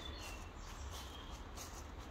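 Faint outdoor ambience with a few short, faint bird chirps.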